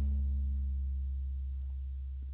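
A sampled electronic floor tom's deep sub-bass tail rings on after the hit, one low steady tone fading slowly over several seconds. It is the long tom decay that clashes with the bass and kick in a mix.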